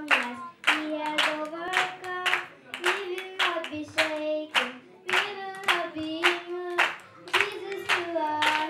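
A young girl singing into a microphone, holding long notes, with hand claps keeping a steady beat about twice a second.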